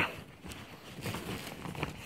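Faint rustling and soft ticks of a plastic bag being rummaged through by hand.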